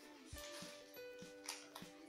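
Quiet background music with sustained notes, over a few light clicks and knocks as a plastic box of oil pastels is handled and opened.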